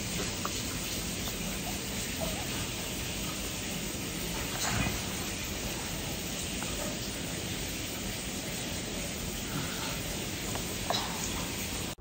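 Shower water running: a steady, even hiss, with a couple of brief faint sounds over it about five and eleven seconds in.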